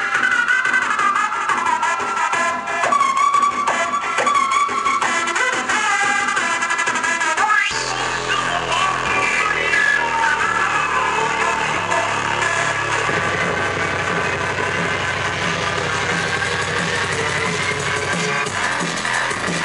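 Live dubstep played loud over a theatre sound system. A bass-light melodic section gives way to heavy bass about eight seconds in, with a rising sweep building toward the end.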